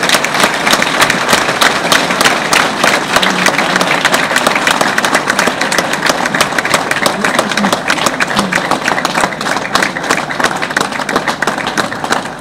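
Audience applauding: dense, steady clapping from many hands.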